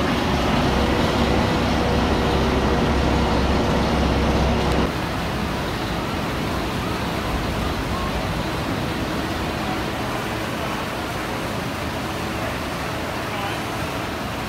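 Orion roller coaster's lift hill running as a train climbs: a steady low hum with a faint steady tone. It cuts off abruptly about five seconds in, leaving a steady, lower outdoor noise.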